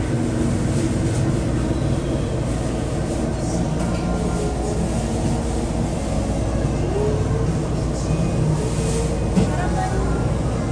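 Restaurant ambience: a steady low rumble, likely from ventilation, with indistinct voices in the background.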